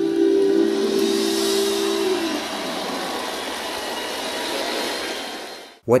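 The end of a live rock band and orchestra performance: a held chord fades out about two seconds in, giving way to a steady hiss-like wash of noise that cuts off suddenly just before the end.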